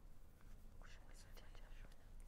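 Near silence with faint whispering: two people conferring under their breath.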